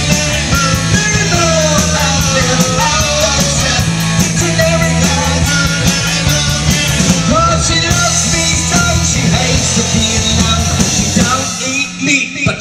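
Live rock band playing loudly: electric guitar, bass guitar and drum kit. A quick, even cymbal beat runs under the band and drops out a little past the middle, and the band briefly dips just before the end.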